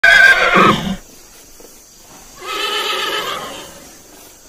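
A horse neighing twice: a loud whinny in the first second, then a second, quieter and longer whinny from about two and a half seconds in.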